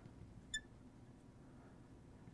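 Near silence, with one brief high squeak about half a second in from a marker drawn across a glass lightboard while writing.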